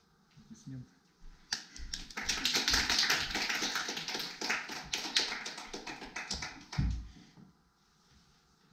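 A small audience applauding, starting about one and a half seconds in, with dense, rapid handclaps that thin out and stop near the seven-second mark.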